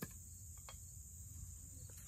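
Faint, steady, high-pitched insect chorus, with a couple of light knocks, one at the very start and one under a second in.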